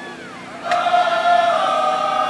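Marching band in the stands coming in loud with a sustained held chord about 0.7 s in, after a brief falling note.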